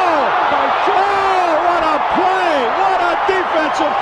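Basketball arena crowd cheering loudly after a blocked shot, with a commentator's excited shouting over the noise.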